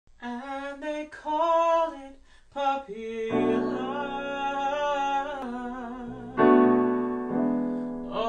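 A man singing with digital piano accompaniment: his voice alone for about the first three seconds, then sustained piano chords come in under it. A loud chord about six seconds in rings and slowly fades.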